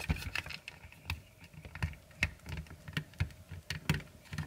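Irregular small clicks and taps of plastic and die-cast toy parts being handled and pressed together as a transforming robot figure's camper-shell section is pegged into the back of its pickup-truck body.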